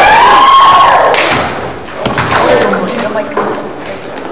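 Gym basketball game: a long, loud shout in the first second, then scattered thuds from play on the court as players jostle under the basket and a shot goes up.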